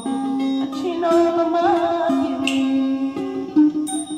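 A woman singing a Burmese song into a microphone with vibrato on held notes, accompanied by a plucked string instrument.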